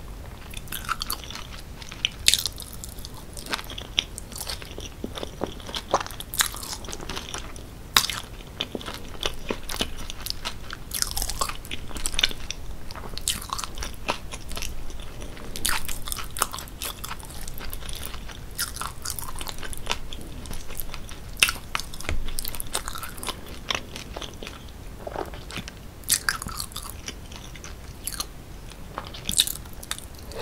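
Close-miked chewing of sauce-covered loaded fries with grilled onions, full of sharp, irregular wet mouth clicks and smacks.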